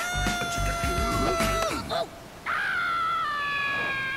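Two long, high-pitched screams from a cartoon voice: the first held on one pitch for nearly two seconds, then, after a short pause, a second higher one that slowly falls in pitch.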